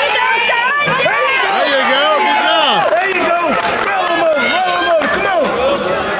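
Many voices shouting over one another at once, with pitches sweeping up and down: spectators and coaches yelling during a wrestling bout.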